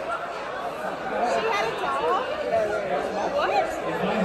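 Several people talking at once, their words indistinct and overlapping.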